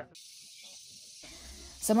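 Faint, steady high-pitched hiss of background noise, with a low rumble joining about a second in; a voice starts speaking near the end.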